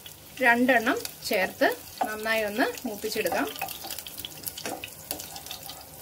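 Sliced green chillies sizzling in hot oil in a saucepan, stirred and scraped with a wooden spatula.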